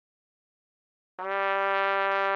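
Silence, then about a second in a trumpet starts one low held note, the opening note of the melody, steady and even in tone.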